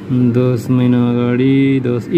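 A man's voice singing in long held notes in a chant-like style. The pitch steps from one steady note to the next, with brief breaks between them.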